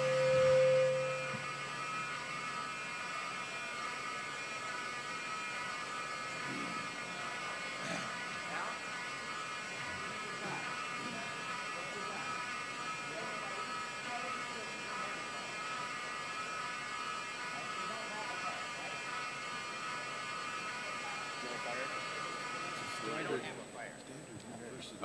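Building fire alarm giving a steady, many-toned electric buzz that cuts off about half a second before the end; it is a false alarm. A louder steady tone sounds over it in the first second and a half, and faint voices murmur underneath.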